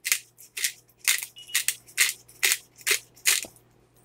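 Black peppercorns being cracked in a twist-top McCormick pepper grinder, a run of about ten short crunching clicks at two to three a second that stops shortly before the end.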